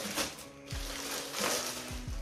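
Clear plastic packaging crinkling and rustling as a football shirt is pulled out of it. Background music with a steady beat plays underneath.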